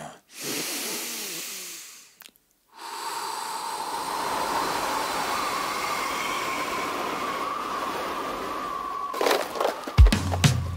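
Cartoon sound effect of the big bad wolf huffing and puffing: a long breath drawn in, a short pause, then about six seconds of steady blowing wind with a faint whistle, as he blows the straw house down. Near the end, a burst of crashing sounds as the house collapses.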